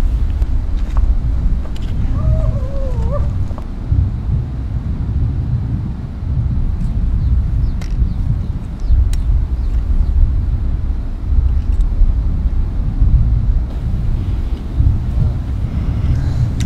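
Wind buffeting the microphone: a loud, gusting low rumble. A short voice sounds briefly about two seconds in.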